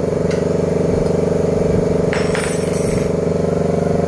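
A steady running engine or motor with a fast, even pulse, and a couple of brief light clinks, the clearer one about two seconds in.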